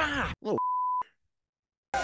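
A brief bit of speech, then a single steady high-pitched censor bleep lasting about half a second. It cuts off abruptly into dead silence, as if the audio were muted.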